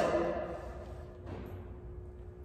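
Room tone of a large, echoing hall: the last spoken word fades away in the first half second, leaving a faint steady hum.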